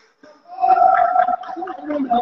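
A man's voice calling out a single word, drawn out and held steady for over a second, typical of a badminton umpire calling the score between rallies.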